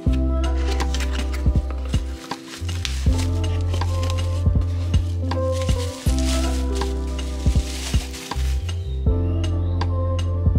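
Lofi hip hop backing music, with plastic bubble wrap crinkling and rustling through the middle as a glass coffee server is unwrapped.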